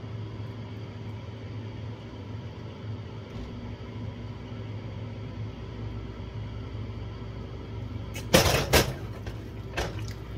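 A steady low hum of kitchen room tone, then near the end a quick cluster of loud knocks and clatter, with one more knock a moment later, as things are handled on a kitchen counter.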